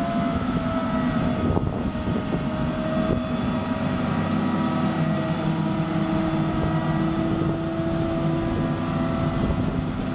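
A Terex RT230 crane's Cummins 5.9L six-cylinder turbo diesel running at a steady speed, with steady whining tones over the engine rumble.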